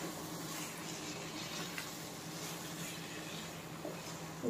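A pan of egg roast gravy simmering on the stove, a faint steady hiss over low heat.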